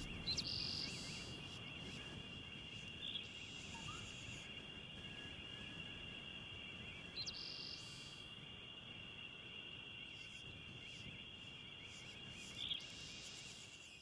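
Faint natural ambience: a steady, high-pitched insect trill, with a few short, higher chirps scattered over it.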